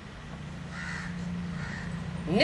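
A crow cawing faintly a couple of times over a steady low hum.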